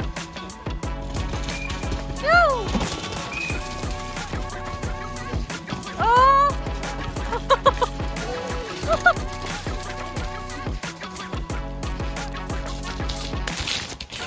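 Background music with a steady beat. Two loud sliding cries cut through it, one about two seconds in and another about six seconds in.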